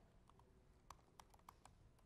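Faint typing on a computer keyboard: a quick run of about ten light key clicks, bunched in the first part of the stretch.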